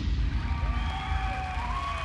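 The dance track's kick-drum beat drops out, leaving a low bass rumble under slow siren-like electronic glides that rise and fall in pitch.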